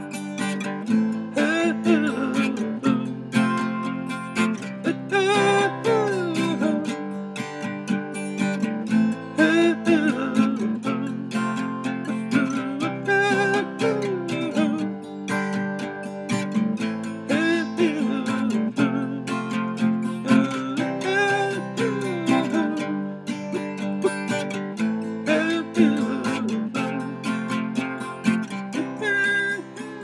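Solo guitar playing an instrumental passage: strummed chords with single notes that slide and bend up and down every couple of seconds.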